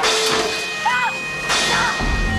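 A sudden loud burst of sound, then dramatic soundtrack music with short high arching cries about a second in and again shortly after.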